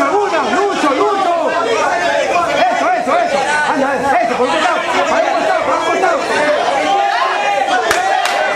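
Several voices talking over one another without a break: steady chatter from the people gathered around the mat.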